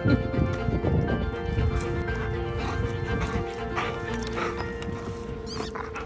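Soft background music holding a steady note, over light, irregular taps and scuffs from a Belgian Malinois walking on a concrete path with a large stick in its mouth.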